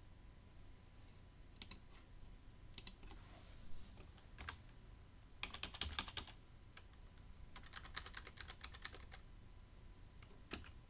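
Faint typing on a computer keyboard: a few single clicks, then two quick runs of keystrokes, one about halfway through and one near the end.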